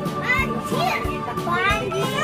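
Children's voices chattering and calling out over background music with a steady beat.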